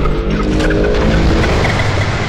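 A steady, loud engine-like drone with a low hum: the sound effect of a flying machine's thruster as it lifts off and flies away.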